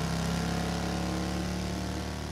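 Motorcycle engine running steadily at speed, with a hiss of wind and road noise.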